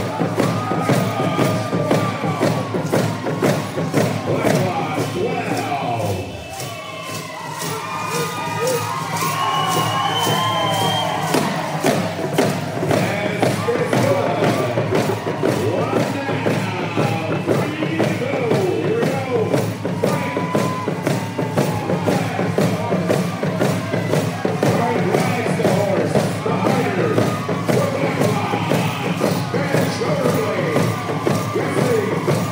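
Hand game team beating hand drums in a fast, steady rhythm while singing a hand game song, with shouts and cheering from the team and crowd. The drumming briefly drops off about six seconds in, then picks up again.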